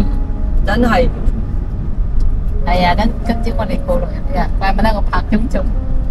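Voices talking indistinctly, briefly about a second in and then again from nearly halfway through, over a steady low rumble of a moving vehicle and wind on the road.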